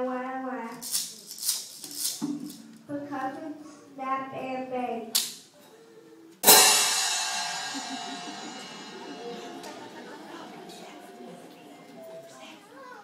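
Cymbals crashed once, about six and a half seconds in, ringing out and slowly fading over several seconds.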